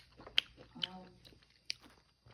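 A person chewing a mouthful of crispy breaded spicy chicken patty, with several sharp crunches. A short hum of the voice comes about a second in.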